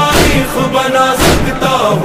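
Recorded Muharram devotional song in praise of Abbas, a held vocal line over music with a heavy drum beat about once a second, twice here.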